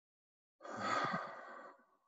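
A man's audible sigh, a breathy exhale starting about half a second in, loudest at first and fading out over about a second.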